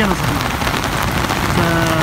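Heavy rain falling steadily, an even, loud hiss of a downpour.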